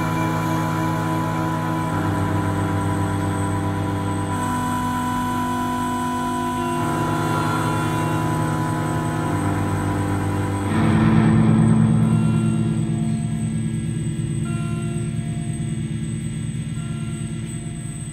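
Live band playing slow ambient music of sustained, shifting low held tones from keyboards, swelling louder with a noisy wash about eleven seconds in, then gradually fading.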